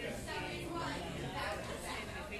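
Café ambience: indistinct chatter of several voices talking at once, no words clear, at a steady level.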